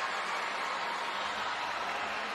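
Stadium crowd cheering a goal, heard as a steady wash of noise.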